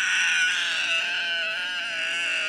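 A child's single long scream of anger, held steady and unbroken, played back through a tablet's small speaker.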